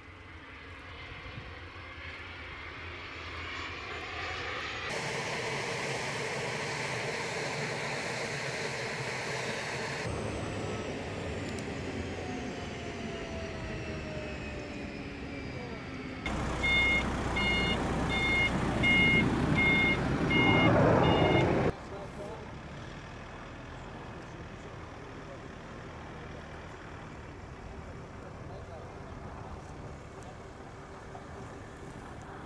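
Turbofan jet engine of an RQ-4D unmanned surveillance aircraft running through its landing and rollout, with a steady roar and a whine that falls in pitch. For about five seconds in the middle, a ground vehicle's reversing beeper sounds about twice a second over a louder rumble. After that there is a quieter, steady engine noise.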